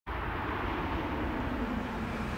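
Mercedes-Benz CLA moving slowly under electric power: a low steady hum from its acoustic vehicle alerting system (AVAS) warning-sound generator over tyre and road noise, growing a little louder as the car approaches.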